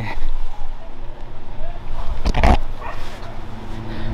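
One short, loud bark-like call about two and a half seconds in, over a steady low rumble from the handheld camera moving as the walker goes along.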